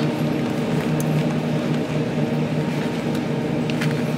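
Steady electrical hum of a refrigerated meat display case, with a couple of light clicks from plastic-wrapped meat packs being handled.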